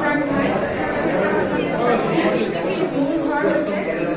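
Speech only: a woman talking into a microphone over a PA, with the chatter of many voices around her.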